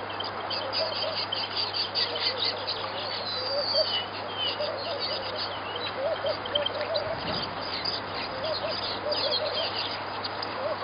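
Wild birds calling: a busy run of short, high chirps, with a lower, repeated call in between.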